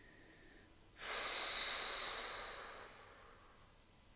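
A woman's long, deep breath out, starting suddenly about a second in and fading away over about two seconds.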